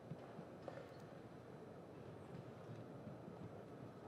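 Faint arena ambience: a low murmur with a few light taps or clicks about a second in.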